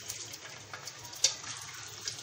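Small pieces of sabudana-potato wafer dough sizzling in hot oil just after being dropped in to deep-fry: a steady hiss with one sharper crackle a little past the middle.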